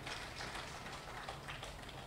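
A pause in a public-address talk: faint hall room tone with a low hum, no distinct sound.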